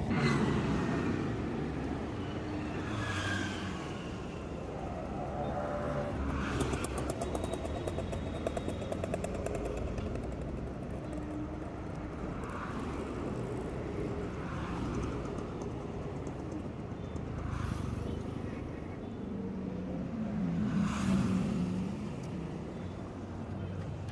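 City road traffic: a steady stream of cars and motorcycles, with several vehicles passing close at intervals.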